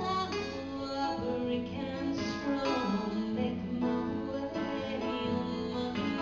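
Live concert music: acoustic guitars playing a song.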